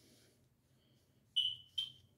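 Two short, high-pitched beeps, like an alarm chirp, about half a second apart near the end, loud against the quiet room. A faint rustle is heard at the start.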